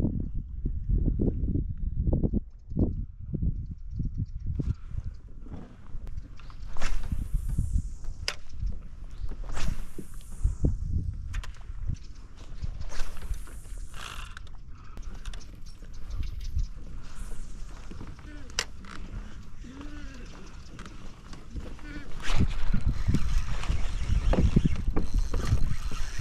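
Kayak being worked through dense marsh grass: grass brushing and swishing against the hull, scattered knocks, and wind rumbling on the microphone. The rumble grows louder near the end.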